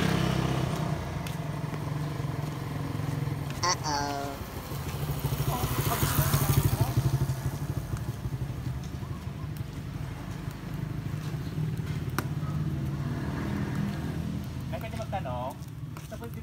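A motor vehicle engine running with a steady low hum that swells around six seconds in, with brief voices about four seconds in and near the end.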